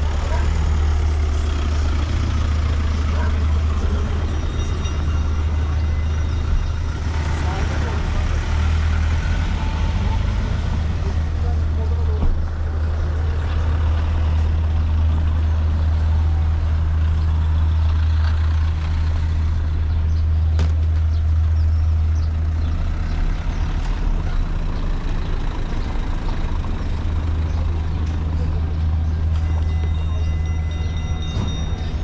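Street traffic on a busy road: car and truck engines running close by, with a steady low rumble under the noise of the street.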